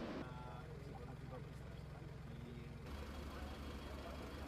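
Idling engines of fire trucks, a steady low hum with faint voices in the background. The hum turns deeper and stronger about three seconds in. A rushing hiss from the burning forest cuts off just after the start.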